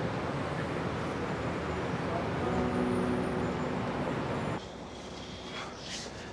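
City traffic noise at night: a steady wash of road noise with a few faint tones in it. It drops suddenly to a much quieter hush about four and a half seconds in.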